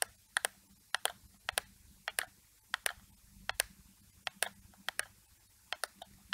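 Computer mouse button clicking: sharp, irregular clicks, often in close pairs like a press and release, one or two pairs a second, as the points of a lasso selection are placed.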